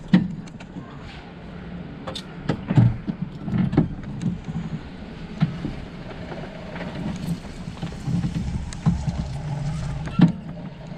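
Golf cart driving slowly over rough dirt ground: a steady low drive hum with frequent short knocks and rattles as the cart jolts.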